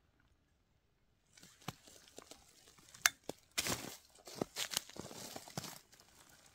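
After about a second of near silence, close rustling and crinkling with several sharp clicks and crackles, busiest in the second half.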